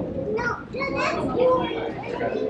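Children's voices talking.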